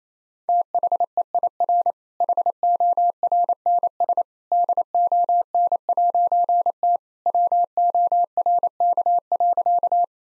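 Morse code at 28 words per minute: a single steady tone keyed in dits and dahs, starting about half a second in. It spells the punchline "THEIR HORNS DON'T WORK" in four word groups, with longer pauses between them.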